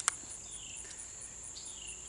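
Steady, high-pitched chirring of insects in the grass, pulsing evenly several times a second, with one sharp click just after the start from the knife sheath being handled.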